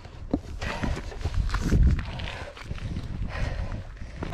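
Footsteps of hiking shoes on bare, rough volcanic rock, an irregular run of scuffs and steps, with wind rumbling on the microphone.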